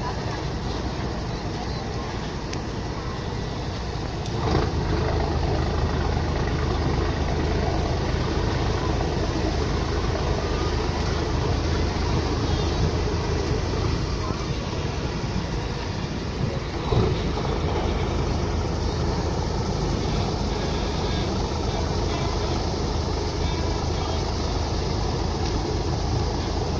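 Passenger boat's engine running with a steady low drone, stepping up in loudness about four seconds in as the boat manoeuvres alongside a floating pontoon. A single thump about seventeen seconds in.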